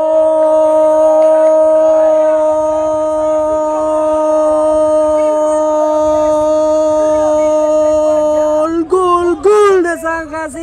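Male football commentator's long held goal cry on one steady note, breaking into short excited shouts about nine seconds in, celebrating a goal just scored.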